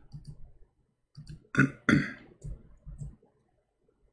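A man clearing his throat: two short, rough bursts about a second and a half in, followed by a few faint low noises.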